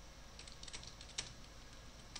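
Typing on a computer keyboard: a few separate, irregularly spaced keystrokes, fairly faint.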